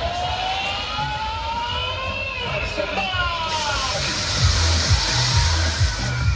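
Electronic dance music from a fairground ride's sound system, with slow siren-like gliding tones in the first half. A loud hiss comes in suddenly about halfway, and a heavy bass beat starts near the end.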